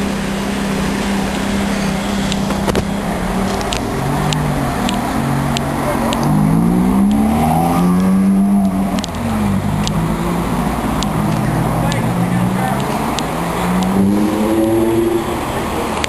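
Ferrari F430's V8 idling steadily, then revving and pulling away in traffic, its pitch rising and falling several times.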